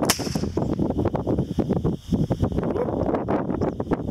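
A single sharp crack right at the start, a blank pistol shot fired over flushing sharp-tailed grouse, followed by irregular rustling and knocking of movement through prairie grass, with wind on the microphone.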